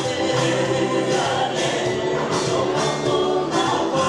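A choir singing a gospel song with a steady beat.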